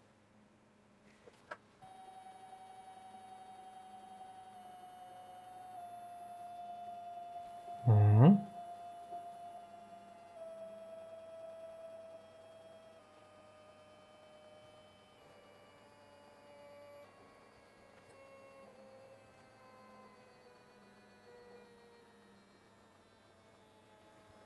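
Stepper motors on A4988 drivers whining with a thin steady tone that steps down in pitch every second or so as the program slows them, growing fainter. A brief voice sound about eight seconds in.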